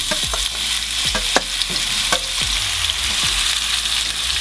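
Zucchini cubes, marinated in adjika, paprika, garlic and oil, hitting a large pan of hot sunflower oil and sizzling steadily. Scattered clicks and knocks come as the pieces drop in and a wooden spatula stirs them.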